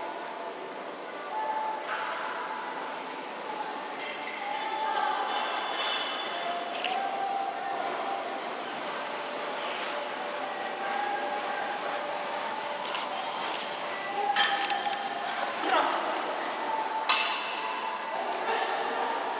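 Indistinct voices echoing in a large indoor riding hall, with a few sharp knocks or clinks near the end.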